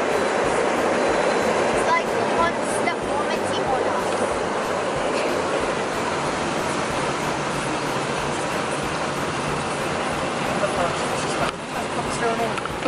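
Automatic car wash heard from inside the car: water spraying over the bodywork and large rotating brushes scrubbing along the windows, a steady rushing noise.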